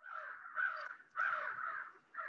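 A crow cawing, a run of harsh caws in two loud bursts, heard through an outdoor participant's open video-call microphone.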